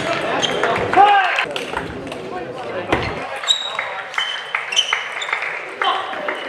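Celluloid-type table tennis ball clicking sharply and irregularly off the bats and the table during a rally, with a short squeal about a second in.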